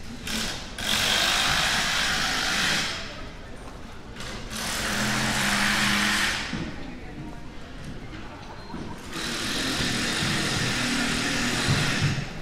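Three loud bursts of harsh, hissing machine noise, each two to three seconds long, with passers-by talking faintly in the gaps between them.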